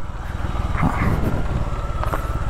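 Bajaj Avenger 220's single-cylinder engine running at low revs in gear with a steady low pulse, engine-braking as the motorcycle rolls slowly down a rough dirt track.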